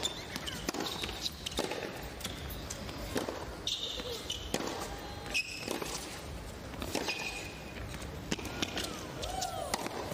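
Tennis rally on a hard court: sharp racket-on-ball strikes at irregular intervals, mixed with short high-pitched shoe squeaks as the players change direction.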